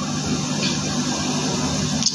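A steady low mechanical hum with a hiss over it, like a running engine or motor, holding level.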